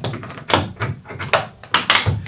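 Small F-clamp being positioned and tightened on a plywood shelf edge: a handful of sharp clicks and knocks of metal and wood, the last two close together near the end.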